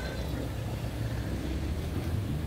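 Motorcycle engine running steadily at low speed, a low hum mixed with road and wind noise.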